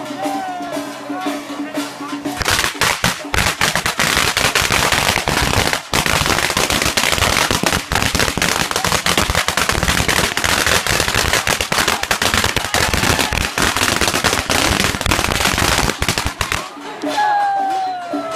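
A long string of firecrackers going off in rapid, continuous crackling for about fourteen seconds, starting about two seconds in and cutting off shortly before the end. Music is heard before the firecrackers start and again after they stop.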